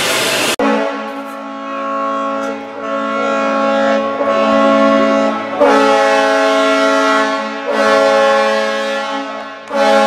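Brass music: slow, sustained chords that change every second or two. It begins abruptly under a second in, where a steady hiss cuts off.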